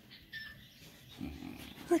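A mini pig giving a soft, low grunt lasting under a second, about a second into an otherwise quiet stretch.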